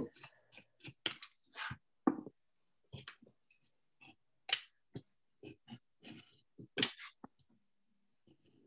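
Craft knife cutting a paper stencil on a cutting mat: short, irregular scratches and clicks as the blade draws through the paper, with a few louder strokes about two seconds in, around the middle and near the end.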